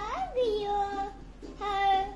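A young boy singing to himself in a sing-song voice: a quick rise and fall in pitch, a long held note, a short break, then another held note, loudest near the end.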